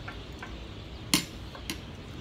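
Metal spoon clinking and scraping against a ceramic food bowl: a few light ticks, with one sharper clink about a second in.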